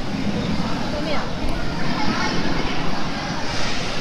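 Indistinct chatter of many visitors' voices over a steady background hum.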